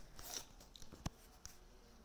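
Almost quiet, with a few faint short clicks and crackles close to the microphone, the sharpest one about halfway through.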